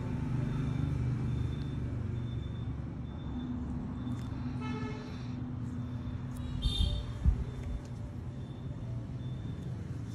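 Steady low rumble of road traffic, with a horn toot about halfway through and a sharp thump a little after, the loudest sound in the stretch.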